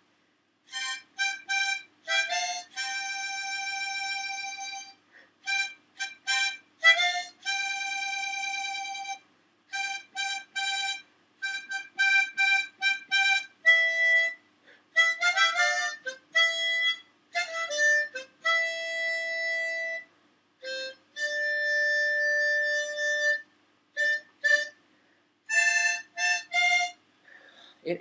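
Harmonica played by a beginner on his first day, working through a song's chorus. It comes in phrases of quick short notes and several held notes, with short breaths between phrases.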